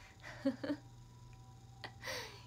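A young woman's brief laugh: a couple of short bursts about half a second in, followed by a single sharp click near the end, over a faint steady hum.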